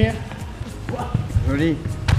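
Dull thuds and shuffling of bare feet and bodies on a sports-hall floor during light hand-to-hand sparring, with a couple of sharper knocks.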